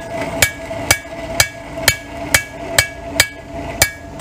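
Blacksmith's hand hammer forging a hot iron rod on an anvil: about nine steady blows, roughly two a second, each with a short bright metallic ring from the anvil and rod.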